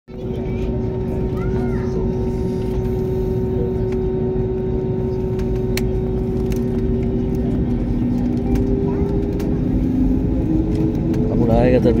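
Jet airliner's engines running at idle during taxi, heard inside the cabin as a steady hum with two steady tones over a low rumble of engine and cabin air noise, growing slightly louder toward the end.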